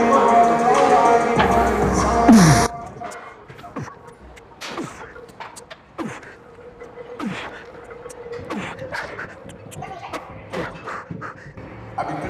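Background music that cuts off suddenly about two and a half seconds in. After it, a man straining through a heavy set of banded Smith machine presses, with short effortful exhales about every second and a bit, light clicks and knocks, and a faint steady hum.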